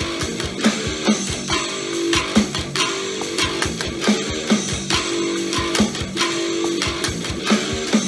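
Electric guitar strummed in a chugging rhythm through the Ignite Amps Emissary amp simulator, over a drum track, playing quietly from the speakers. The bare strings of the guitar being played can be heard strumming acoustically in the room alongside.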